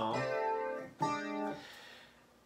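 Clavinet patch played on an electronic keyboard: two notes or chords, the second struck about a second in and fading away soon after.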